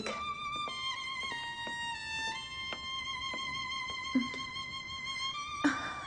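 Violin background score playing a slow melody of long held notes that step gently from one pitch to the next, one note held for about three seconds in the middle.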